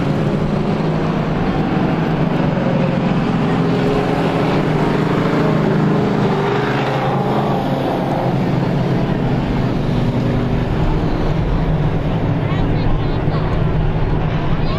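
Strictly Stock race car engines running at reduced speed under a caution flag: a steady, loud drone of several engines at once, some of them shifting pitch.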